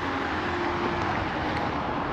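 Steady outdoor background noise beside a road: an even hiss with no distinct events, such as wind on the microphone and distant traffic make.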